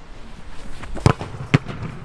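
A football being struck twice: two sharp thuds about half a second apart, over low outdoor background noise.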